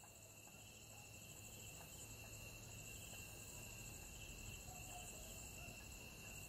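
Faint, steady high-pitched chirring of insects such as crickets, gradually swelling as it fades in, over a low hum.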